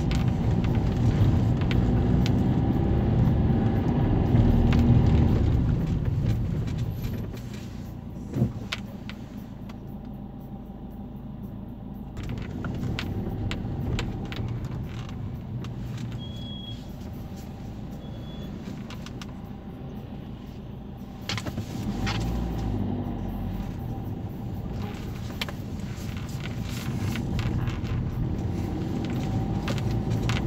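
Car engine and road noise heard from inside a moving car, loud for the first several seconds, dropping to a quieter stretch in the middle while the car slows at a junction, then rising again about two-thirds of the way through. A single sharp click comes near the start of the quiet stretch.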